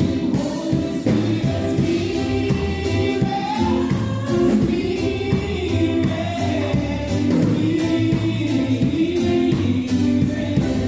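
Women singing a gospel song together into microphones, amplified, over a steady drum beat and bass accompaniment.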